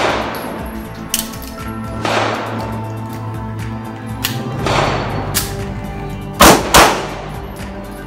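Pistol shots fired one after another at an uneven pace, about eight in all, the loudest two close together near the end, over background music.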